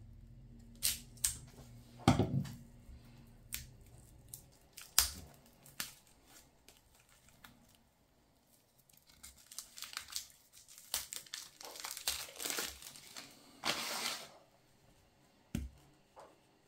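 Sharp clicks and scrapes as a knife cuts into the thin plastic casing around a dense wheat ration bar. Then a long stretch of crinkling and tearing as the clear plastic wrap is peeled off by hand, and a short snap near the end as the dry bar is broken in two.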